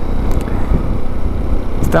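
Italika V200 motorcycle riding at a steady cruising speed: a continuous low rush of engine, tyre and wind noise with no change in pace. A voice starts right at the end.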